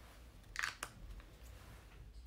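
Two short, faint sniffs as a person smells perfume on a paper test strip.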